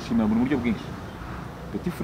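A man speaking briefly, then a short pause with low background noise before talk resumes.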